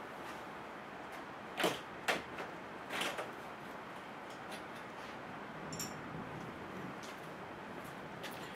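Steady faint room hiss with a few brief knocks and rustles of parts being handled on a workbench, three of them in the first three seconds and a fainter one later.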